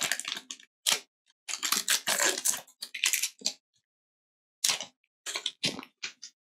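Foil wrapper of a Pokémon Fusion Strike booster pack being torn open and crinkled in the hands: irregular crackling for about three and a half seconds, then a pause and a few short rustles as the cards are slid out of the pack.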